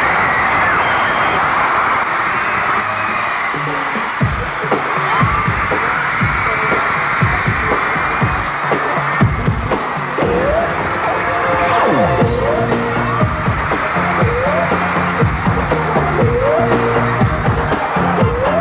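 Crowd noise in the arena, then from about four seconds in a dance track with a steady, heavy beat and short rising synth tones.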